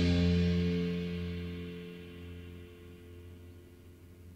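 The last chord of a blues-rock song, struck on a hollow-body electric guitar with the drum kit's cymbals, ringing out and fading away over about three seconds.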